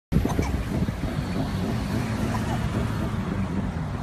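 Car in motion heard from inside the cabin: a steady low rumble of engine and road noise.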